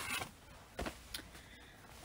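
Faint rustling of clothing being handled, with a couple of light clicks about a second in.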